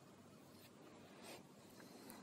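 Near silence: faint room hiss, with two faint brief scratchy sounds near the middle, about half a second apart.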